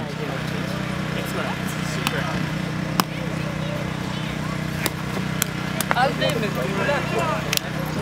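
Footbag being kicked: a handful of sharp, separate taps over faint background talk and a steady low hum.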